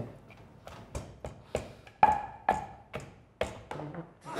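Wooden pestle pounding boiled palm fruits (banga) in a wooden mortar, about two dull knocks a second at an uneven pace.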